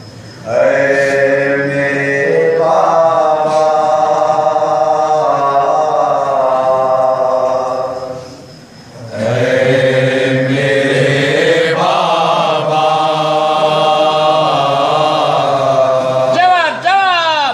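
Men's voices chanting a noha, a Shia Muharram lament, unaccompanied, in long held, wavering phrases. One phrase ends with a brief pause just past halfway, then the next begins.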